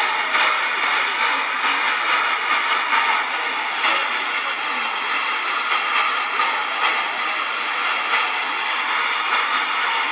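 A steady rushing noise, even and unbroken throughout, with a faint high whine inside it.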